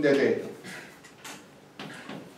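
A man's voice trails off at the start, then a few faint, short scrapes.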